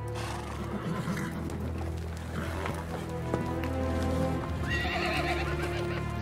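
Horses neighing with some hoofbeats, over film score music with long held notes. A whinny stands out about five seconds in.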